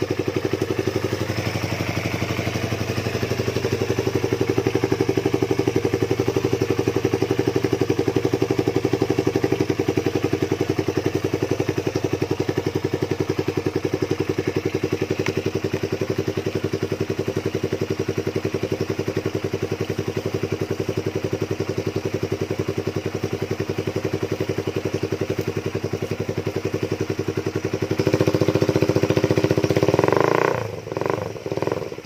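Honda CB150R single-cylinder motorcycle engine idling steadily through a very long homemade exhaust pipe made of old cans. It gets louder for the last two seconds.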